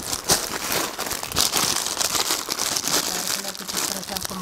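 Clear plastic garment packaging crinkling and rustling as plastic-wrapped suit packs are handled and laid one on another, a continuous crackle of many small crinkles.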